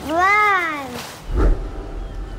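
A drawn-out, wordless, meow-like vocal call that rises and then falls in pitch over about a second, followed by a brief low thump.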